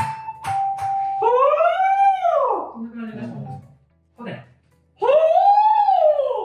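A voice sliding up and then back down in pitch on a sustained vowel, twice, as a voice-training siren exercise toward mixed voice. A short steady tone sounds at the start and steps down once.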